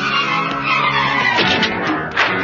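Film fight-scene background score with sustained instrumental notes. A swooping effect falls in pitch over the first second and a half.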